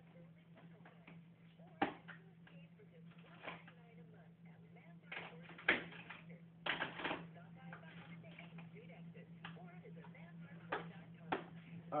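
Scattered clicks and knocks of metal tools and sockets clattering as they are rummaged through in a workbench drawer, over a steady low hum.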